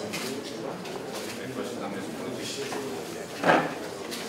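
Indistinct murmured talk of several people in a room, with one brief, louder vocal sound about three and a half seconds in.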